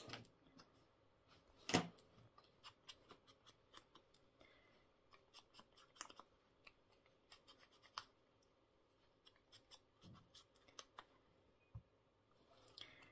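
Small craft scissors snipping paper tags: a string of quiet, sharp snips and clicks, with one louder snip about two seconds in, followed by light handling of the paper pieces.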